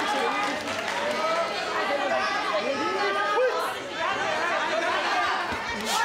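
Crowd of spectators' voices in a hall: many people shouting and calling over one another during a kickboxing bout, with a sharp smack near the end.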